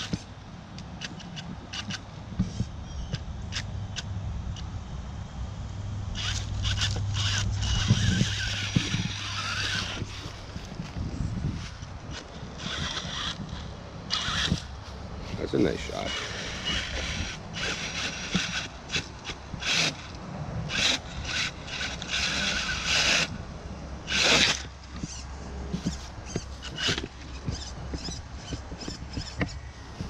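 RC rock racer's brushless motor and drivetrain whining in repeated bursts of throttle, with tyres and chassis scraping and knocking on wooden planks and logs as it crawls over them. There are many short sharp knocks.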